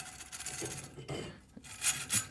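Flex-hone ball hone, an abrasive ball brush on a flexible twisted-wire rod, rasping and rubbing inside a metal intake manifold port as it is worked by hand. The scratching is quiet and uneven, with a brief sharper scrape near the end.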